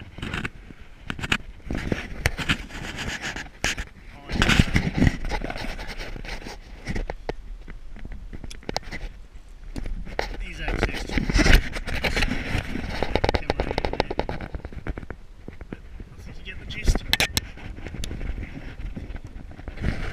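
Handling noise from a handheld camera rubbing and knocking against the cabin lining of a small boat as it is moved about, with indistinct talk mixed in.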